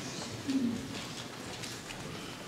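A short, low murmur from a person's voice about half a second in, over faint room noise.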